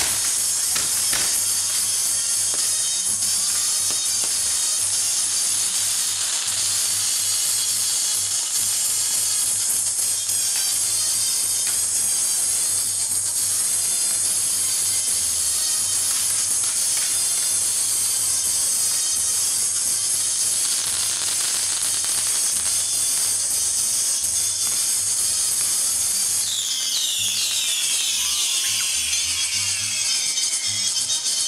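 Fireworks fountains and castillo tower pieces hissing steadily with a faint crackle, over music. Near the end, several firework whistles sound together, each falling in pitch.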